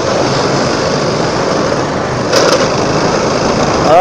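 A motorcycle running at road speed in traffic, its steady engine note mixed with wind and road noise, with a brief louder swell a little past halfway.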